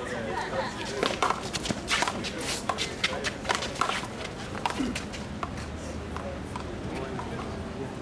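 A one-wall handball rally: a string of sharp smacks as the small rubber ball is struck by gloved hands and rebounds off the concrete wall and court. The smacks come quickly for the first few seconds and stop about five seconds in, with players' shoes scuffing as they run.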